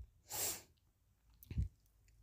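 A short, sharp breath, then a soft low thump about a second later.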